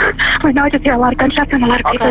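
Speech only: a caller's voice from a recorded emergency phone call, with the narrow, tinny sound of a telephone line.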